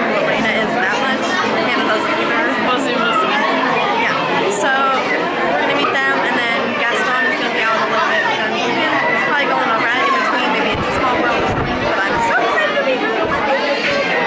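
Crowd chatter: many voices talking over one another in a steady, dense babble inside a busy indoor hall.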